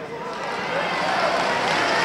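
Crowd of spectators, many voices calling out and cheering at once, growing steadily louder.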